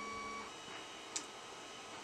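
Quiet room tone with a thin, steady high whine that cuts off about a quarter of the way in, and one faint short tick a little past the middle.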